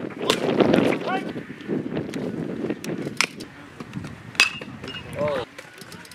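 A baseball pitch smacking into the catcher's mitt with a sharp pop about a third of a second in, amid the voices of players and spectators. Two more sharp cracks follow later, the second, about four seconds in, with a short metallic ring.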